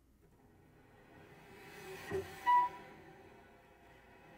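Solo cello played softly with the bow: a soft note swells out of near silence, rises to two louder notes a little past halfway, then fades away.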